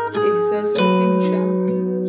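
Song playback: a plucked acoustic guitar playing chords that ring on, with the chord changing about a second in.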